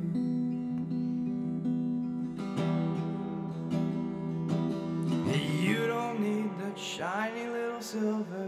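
Martin LX1E small-bodied acoustic guitar strummed, its chords ringing in an instrumental passage between sung lines.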